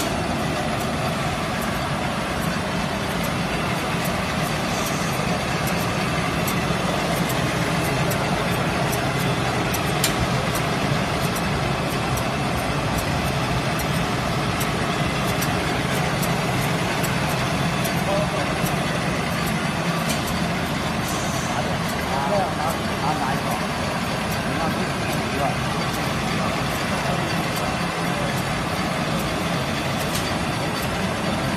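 JD100 egg roll production line running: a steady, even machine hum with occasional faint ticks.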